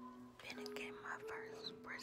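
A woman whispering over soft background music with long held notes.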